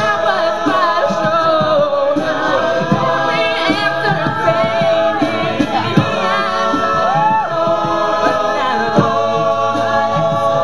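Mixed-voice a cappella group singing a pop ballad in close harmony, a female lead voice over sustained backing vocals, with occasional low vocal-percussion hits.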